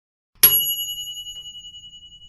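A single bright bell ding, the sound effect for a subscribe button's notification-bell icon. It is struck about half a second in and rings on in a slow fade for about two seconds.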